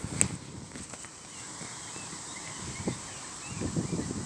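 Quiet outdoor ambience: light wind and rustling as the handheld phone is moved, with a couple of faint handling clicks near the start.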